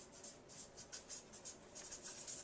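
Felt-tip marker writing on flip-chart paper: a quick run of short, faint, scratchy strokes as a word is written out letter by letter.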